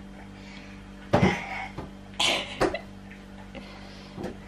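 A person coughing: one loud cough about a second in, then a second breathy, hissing cough a second later, followed at once by a sharp click.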